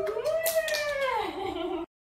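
A high, drawn-out vocal cheer that rises and then falls in pitch, over a few hand claps. The sound cuts off abruptly near the end.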